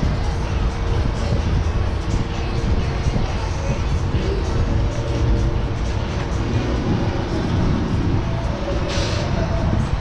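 Wind rushing and buffeting on the microphone of a camera carried on a spinning chair swing ride, with fairground music playing underneath.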